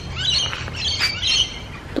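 Wild birds calling in a quick run of short, high chirps, several overlapping, through the first second and a half.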